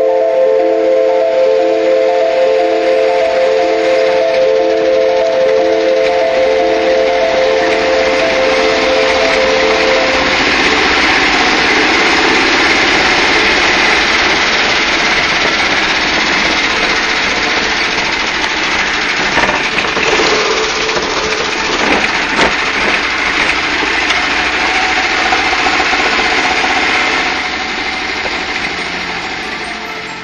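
Dark cinematic soundtrack. Several held tones with a low note pulsing about once a second fade out about ten seconds in. A loud rushing hiss fills the rest and eases off near the end.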